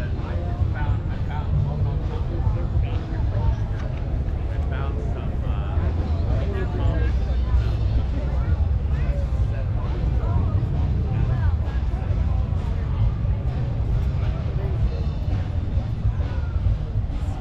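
Indistinct voices of many people talking, over a steady low rumble.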